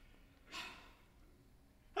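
A single breathy exhale, a short sigh, about half a second in; otherwise quiet.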